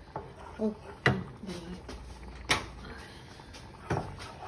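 Wooden spoon knocking against the side of a metal saucepan while stirring a thick cream mixture: four sharp, separate knocks spread over a few seconds.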